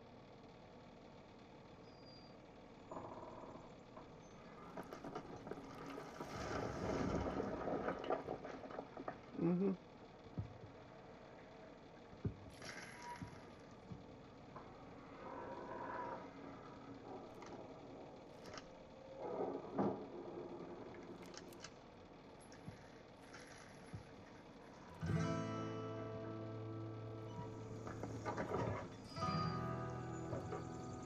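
A film soundtrack playing at low level: scattered sound effects and music, then held guitar chords coming in about 25 seconds in.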